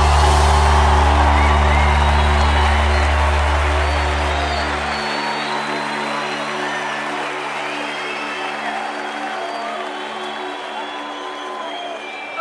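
A live band holds a sustained chord that slowly fades, its deep bass note dropping out about five seconds in, while a large crowd cheers and whoops.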